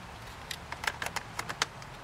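Spring-loaded positive clamp of a jump starter being worked onto a car battery's positive terminal: a quick run of about ten light clicks and rattles starting about half a second in and lasting about a second.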